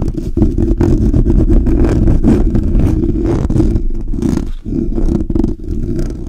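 Fingers rapidly rubbing and scratching on the grille of a Blue Yeti microphone, heard right at the capsule as a loud, rumbling handling noise with many fast, irregular scratches, easing briefly about four and a half seconds in.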